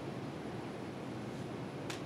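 Steady background hiss of a small room during a pause in talk, with one brief sharp hiss or rustle near the end.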